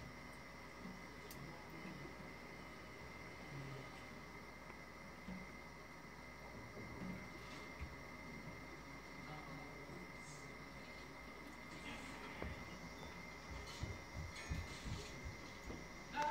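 Faint room tone: a steady low hum with a thin high whine running through it, like equipment running nearby. A few faint clicks are heard, and some soft low knocks come in the last few seconds.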